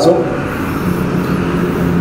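Steady road noise with an even low hum underneath, as heard riding along a road.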